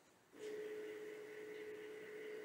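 Motor of a Revopoint dual-axis turntable giving a faint, steady whine as it tilts the platform back level to its home position. The whine starts about half a second in.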